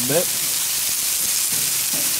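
Corn, broccoli and chicken sizzling steadily on a hot flat-top griddle as metal tongs push the corn around.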